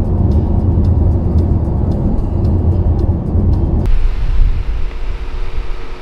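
Steady low road rumble inside a car driving at highway speed, from tyres and engine. It cuts off sharply about four seconds in, leaving a quieter background with a steady held tone.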